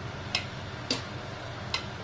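A metal spatula clinking three times against the side of an aluminium pot while leafy greens are stirred, over a steady low hum.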